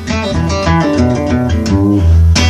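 Ovation Standard Balladeer acoustic guitar played fingerstyle: a quick run of plucked single notes over a low bass note that rings underneath, the kind of stock bluesy lick a player falls back on.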